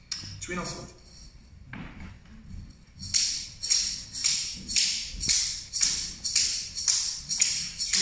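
Handheld rattle shaken in a steady beat, a few soft strokes at first, then from about three seconds in a regular pulse of about two and a half strokes a second, setting the rhythm for a traditional song.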